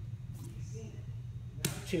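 Grappling movement on a gym mat during a hip switch, with one sharp slap of body contact about one and a half seconds in, over a steady low hum.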